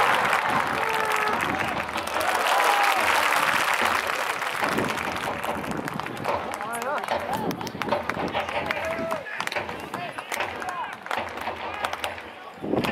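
Stadium crowd clapping and applauding, with scattered voices calling out over it; loudest at the start, then slowly fading to lighter, patchier clapping.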